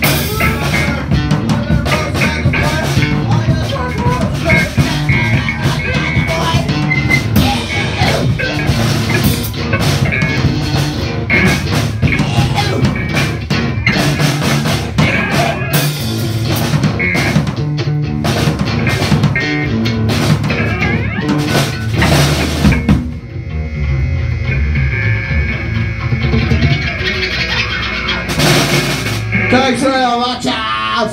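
Loud live rock band playing: drum kit with frequent cymbal hits, electric guitar and keyboard. About 23 seconds in, the drums drop out and a thinner sustained chord rings on, with one more cymbal crash near the end as the song winds down.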